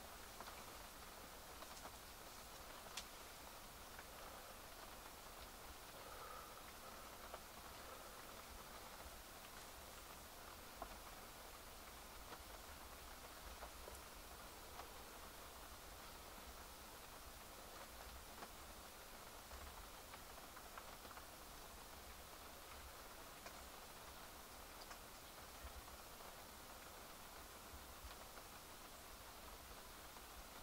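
Faint, steady light rain, with scattered soft ticks of drops.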